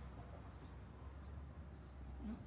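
Faint, regular high-pitched chirps, about two a second, over a low steady hum.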